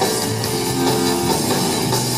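Live rock band playing at full volume, with electric guitar and drum kit.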